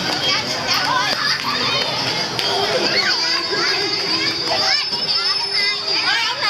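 Children playing, many young voices calling, chattering and squealing over one another without a break.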